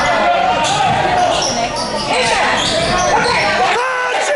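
Basketball game sounds in a gym: the ball bouncing on the hardwood court and sneakers squeaking, under spectators' voices calling out.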